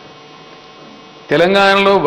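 Steady electrical mains hum through a pause in speech. After about a second, a man starts speaking into a handheld microphone, much louder than the hum.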